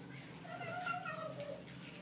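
A cat meowing faintly: one drawn-out call of about a second, starting about half a second in and dropping slightly in pitch at its end.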